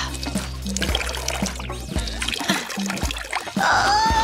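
Background music with a steady beat, over water trickling and pouring as soaked long hair is wrung out.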